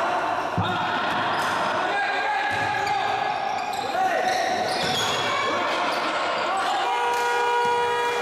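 Basketball bouncing on a hardwood gym floor amid shouting players and spectators, echoing in a large hall.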